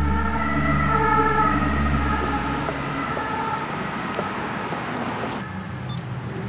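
A siren sounding in a city street, its steady tones breaking into short alternating segments. A heavy low bass drone runs under it and cuts off about three seconds in.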